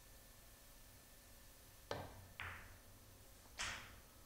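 Pool cue tip striking the cue ball, then the cue ball clicking into the object ball half a second later, with a third, sharper ball click just over a second after that.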